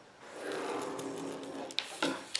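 A drawing-wheel pen tracing a curve along the edge of an acrylic arc ruler on paper, a faint steady scratching, with a sharp click near the end.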